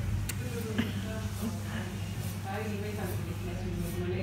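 Indistinct speech over a steady low room hum, with two short clicks in the first second.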